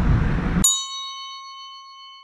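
Low outdoor traffic rumble cuts off abruptly about two-thirds of a second in, and a single bell-like chime rings out and slowly fades.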